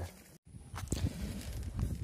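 Rustling and irregular light knocks of gathered dead branches and logs being handled and carried, starting after a sudden cut.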